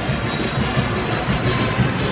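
A pep band of brass and saxophones, with a sousaphone in the low end, playing a tune.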